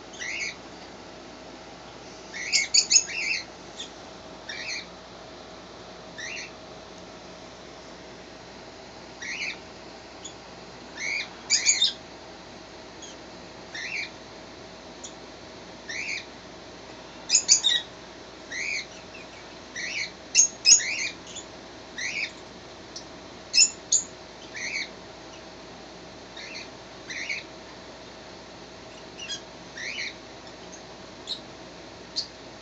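Red fox kit making short, high-pitched squeaky chirps every second or two, sometimes several in quick succession, while being groomed: contented vocalising.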